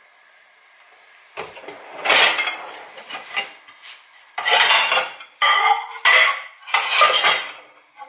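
Ceramic dinner plates clinking against each other and the dishwasher's wire rack as they are lifted out and stacked, a run of separate clatters starting after a quiet first second.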